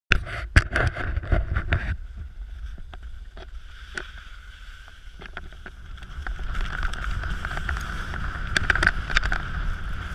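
Skis sliding and scraping over snow with wind rumbling on the camera's microphone. A quick run of sharp knocks in the first two seconds; the ski hiss gets louder from about six seconds in.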